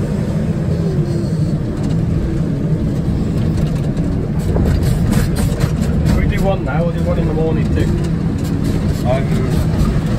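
JCB telescopic loader's diesel engine running steadily under load, heard from inside the cab while it drives with a full bucket. A voice speaks over it in the second half.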